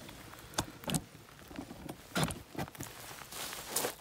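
Handling noise: irregular rustles and soft knocks as a handheld phone camera is swung around against a nylon rain jacket.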